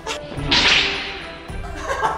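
A thin, flexible wushu straight sword (jian) whipping through the air in one fast swish about half a second in, fading over the next second.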